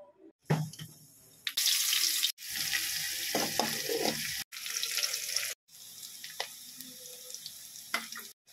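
Sliced shallots frying in hot oil in a steel pan, a steady sizzle with fine crackles, broken into short stretches that cut off suddenly. A knock is heard about half a second in.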